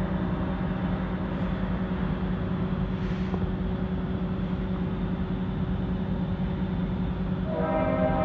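Approaching EMD diesel freight locomotives running with a steady low drone between horn blasts. Near the end the Leslie RS5T five-chime horn sounds again, a loud sustained chord.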